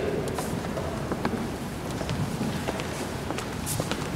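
Audience applauding: an even patter of clapping with scattered sharper individual claps.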